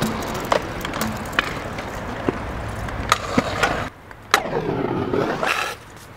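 Stunt scooter wheels rolling on a concrete skatepark surface: a steady rumble broken by sharp clacks of the deck and wheels striking the concrete. The rumble drops away just before four seconds in and comes back with a hard landing clack.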